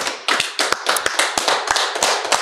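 Hand clapping by a few people: quick, irregular claps overlapping one another, kept up without a break.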